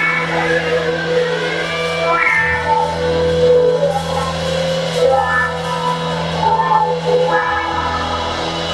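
Live rock band of two electric guitars, electric bass and drum kit playing together, with held low bass notes under shifting guitar lines.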